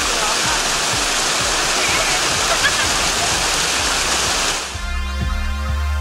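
Rushing water of a small waterfall, a steady hiss that cuts off suddenly near the end as music with a low bass note takes over.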